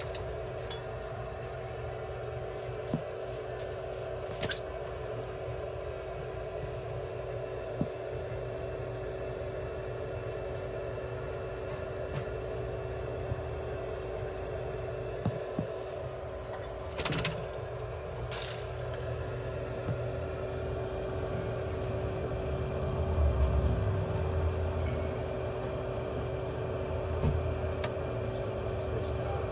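A steady machine hum runs throughout, with scattered short handling knocks and rustles. There is one brief, sharp high sound about four and a half seconds in, and a low rumble a little past the middle.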